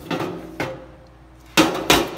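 Hard plastic ice packs knocking against the walls and floor of a stainless steel compartment as they are set in place. A couple of light knocks come first, then a louder clatter in the last half second.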